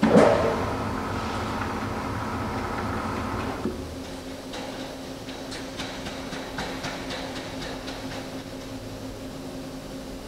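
Clausing-Metosa gap bed engine lathe running with a steady mechanical hum and a higher whine. The whine stops about three and a half seconds in, leaving a lower steady hum, with light clicks as the headstock and chuck are handled.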